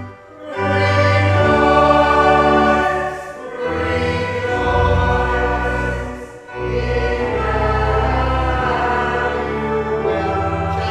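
Congregation singing a hymn with organ accompaniment, in sustained chords phrase by phrase, with short breaks between phrases about three seconds apart.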